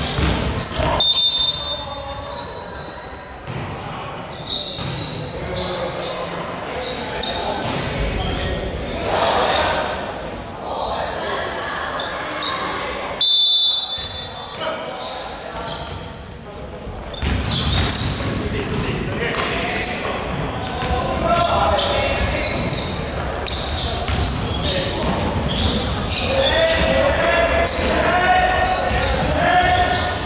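A basketball bouncing on a wooden court during a game, amid players' and spectators' voices, in a large reverberant sports hall. Two short high tones sound, about a second in and about halfway through.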